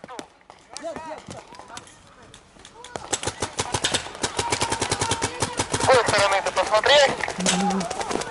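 Paintball markers firing: a few scattered shots, then from about three seconds in a dense, rapid string of many shots a second.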